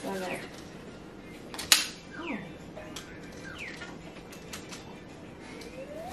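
Handling noise from a folding camping chair being assembled: scattered rustles and small clicks of fabric and aluminium parts, with one sharp click nearly two seconds in, the loudest sound.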